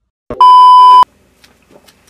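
A single loud electronic bleep, the steady 1 kHz tone of a censor bleep, lasting under a second and starting about a third of a second in.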